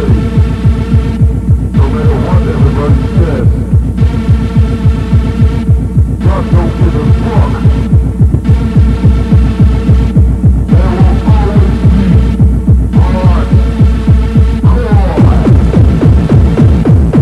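Electronic dance music from a club DJ set recorded on tape: a fast, steady kick drum under a held droning synth tone, with the upper layers cutting out briefly about every two seconds and short synth glides between.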